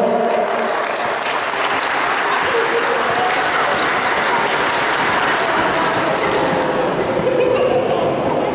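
Spectators applauding steadily in an indoor sports hall, with voices mixed in underneath.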